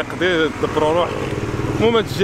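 A man's voice speaking in short phrases, with an engine running steadily underneath through the second half.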